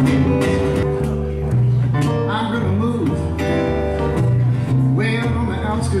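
Small swing band playing live: upright bass notes under strummed acoustic guitar and keyboard piano.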